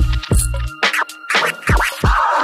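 Chill hip hop beat with kick drums and a deep bass line, with turntable scratches sweeping up and down in pitch in the second half.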